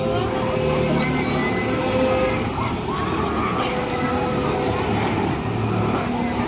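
Scrambler amusement ride running, its machinery giving a steady hum, with crowd voices around it.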